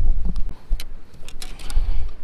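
A low rumble of wind on the microphone, dropping away about half a second in, followed by several light clicks and knocks from fishing gear being handled on the boat deck.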